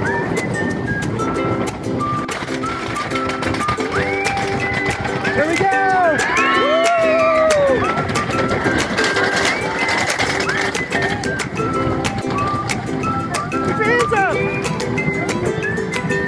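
Riders on a wooden racing roller coaster shrieking and whooping in rising-and-falling cries, over rapid clicking and clatter from the train on the track. Music with a steady repeating pattern runs underneath.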